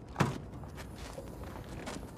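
Footsteps on pavement, light and quick, following a short sharp sound just after the start.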